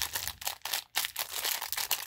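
Clear plastic bag of small beads crinkling and rustling in the hands as it is squeezed and turned, in a quick run of irregular crackles.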